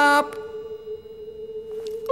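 A steady, pure tone held at one pitch, a drone in the cartoon's soundtrack, with fainter high tones above it. A voice breaks off just after the start.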